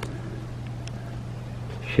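Steady low background hum with a faint haze of noise and a couple of faint ticks near the middle.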